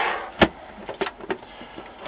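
Sheet-metal LCD monitor chassis being handled on a workbench: one sharp knock about half a second in, then a couple of light clicks.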